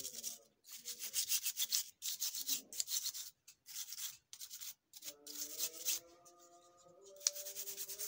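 Toothbrush bristles scrubbing the circuit board of a car power-window switch in quick back-and-forth strokes, in runs with short pauses, cleaning off carbon deposits that water ingress left on the contacts. Faint background music with held notes comes in about five seconds in.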